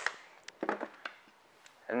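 A tape measure and small hardware handled on a wooden workbench: a sharp click at the start, then a few light knocks and taps on the wood.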